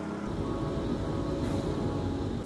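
Steady low rumble of road traffic.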